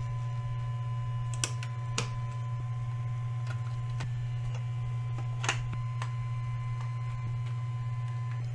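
Light clicks and knocks of Xbox Series S internal parts (metal shield, heatsink, fan and power-supply housing) being handled and seated during reassembly, three sharper clicks standing out, over a steady low hum.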